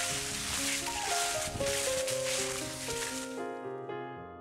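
Dry fallen leaves rustling and crackling underfoot as a puppy and walker move through a thick layer of them, stopping about three and a half seconds in. Piano music plays throughout.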